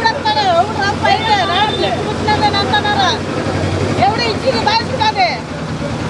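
Mostly speech: a woman talking animatedly, with a steady low hum underneath.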